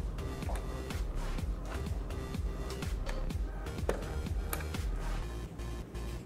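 Background music with a steady, bass-heavy beat.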